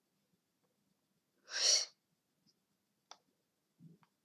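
A single short, forceful rush of breath near the microphone, about half a second long, like a sharp exhale or sniff, followed by a faint click.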